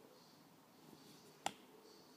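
Near-silent room tone with a single sharp click about one and a half seconds in.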